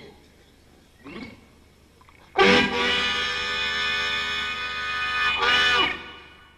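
Blues harmonica sounding one long held chord that starts sharply about two seconds in, its pitch bending just before it cuts off about three and a half seconds later.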